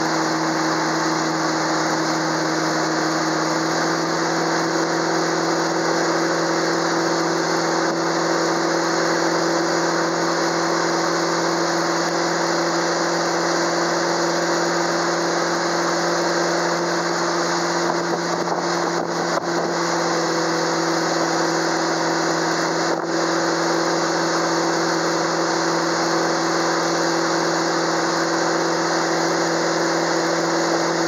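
Towing motorboat's engine running steadily under way, an even drone with a dense rush of wake water and wind over it.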